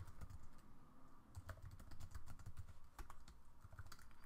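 Computer keyboard typing, faint: a quick, irregular run of keystrokes as a line of code is typed.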